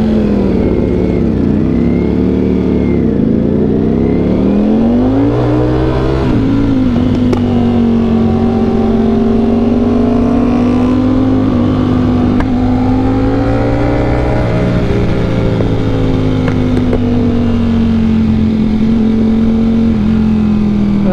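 Ducati Panigale V4 engine heard from the rider's seat as the bike pulls away: the engine note climbs and drops through the first few seconds as it revs and shifts. It then holds a steady pitch while cruising in second gear.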